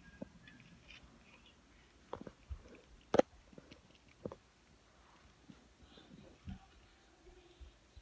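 Scattered faint taps and knocks from a hand on a laptop keyboard and the phone held over it, the sharpest a little after three seconds in.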